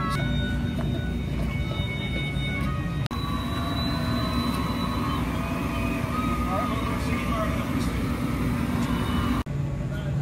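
Outdoor background of faint voices and music over a steady low rumble. The sound drops out abruptly twice, a little after three seconds and again shortly before the end.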